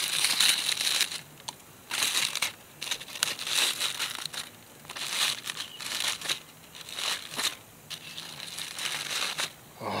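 Aluminum foil crinkling and crumpling in short irregular bouts, about every second, as fingers peel open a hot, fire-blackened foil cooking packet.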